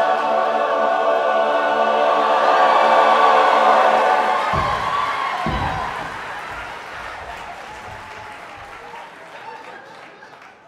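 Men's a cappella barbershop chorus holding a loud sustained chord that cuts off about four and a half seconds in, with two low thumps as it ends; audience applause follows and gradually dies away.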